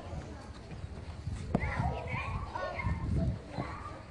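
A single sharp hit of a tennis racket striking a ball about one and a half seconds in, with children's voices around it.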